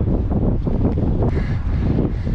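Wind blowing across the camera microphone: a loud, uneven low rumble.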